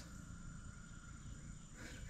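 Faint outdoor ambience: a steady high-pitched insect drone over a low background rumble.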